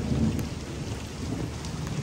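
Steady rain falling during a thunderstorm, with a low rumble near the start.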